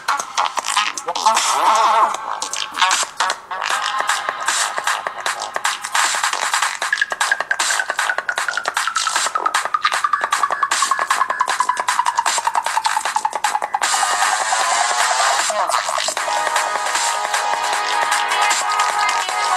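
A music track played at full volume through the Takee 1 smartphone's two bottom-mounted speakers, thin in the bass. It has a busy beat, and a long falling sweep runs through its middle stretch.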